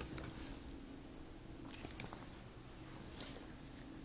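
Quiet room tone with a few faint clicks and rubs from hands handling an HP Mini 210 netbook's plastic case.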